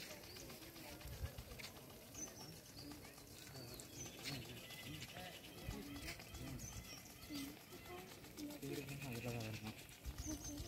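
Faint distant voices with short, high bird chirps now and then.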